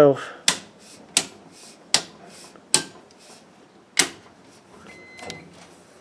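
Household circuit breakers snapped on one by one by hand, a series of sharp clicks spaced under a second apart, some louder than others, as each branch circuit goes back onto utility power. A short, faint beep sounds about five seconds in.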